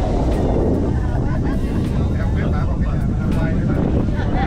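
Steady low rumble of a Sugarloaf cable car cabin in motion along its cables, with passengers' voices talking in the background.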